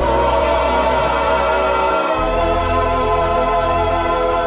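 The closing chord of a slow ballad, held steady by the band and choir-like backing voices.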